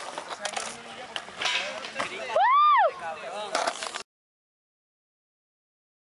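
Skateboard on a concrete skatepark ledge, with sharp clacks and scraping and voices talking. About halfway through comes a loud high call that rises and falls once. The sound cuts off abruptly about four seconds in, leaving silence.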